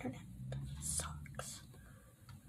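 A woman whispering quietly, with a few soft hissing sounds.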